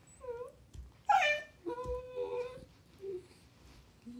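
Corgi puppy 'talking': a series of pitched vocal calls, a short dipping one near the start, the loudest and highest about a second in falling in pitch, then a longer, steadier call, and a faint short one near the end.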